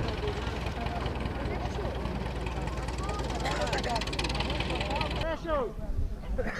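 Farm tractor engine running steadily close by, a low even hum with faint voices over it; the engine sound cuts off abruptly about five seconds in.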